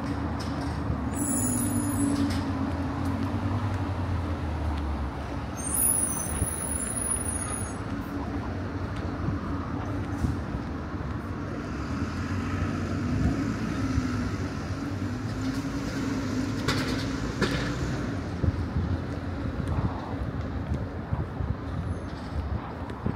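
Road traffic noise with a steady low hum, and a heavy vehicle's engine rumble in the first few seconds. Brief high-pitched squeals come about a second in and again around six seconds.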